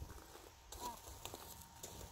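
Quiet outdoor ambience with a faint low rumble and a few soft ticks, and one brief, faint voice sound a little under a second in.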